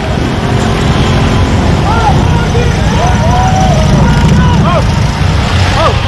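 A group of motorcycles passing close by, their engines making a loud, steady low rumble. Over the engines come several short rising-and-falling shouts from onlookers.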